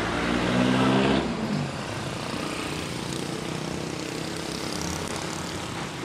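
A motor vehicle's engine running close by for about the first second, as a steady hum, then fading into a steady wash of street traffic noise.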